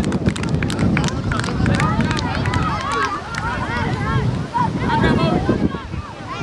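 Children's voices shouting and calling out over one another on an outdoor football pitch, many short high-pitched calls overlapping, with wind rumbling on the microphone.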